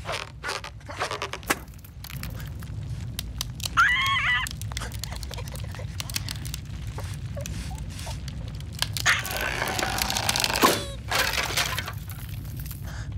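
Cartoon slapstick sound effects: short clicks and knocks, a bird character's wavering cry about four seconds in, then a long cracking, crunching noise with a sharp crack near the end.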